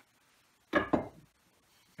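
A wooden froe mallet struck once: a single sharp wooden knock about three-quarters of a second in, dying away quickly.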